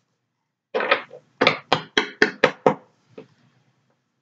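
A tarot card deck being knocked: two softer strokes, then six quick sharp knocks at about four a second, and one faint knock near the end.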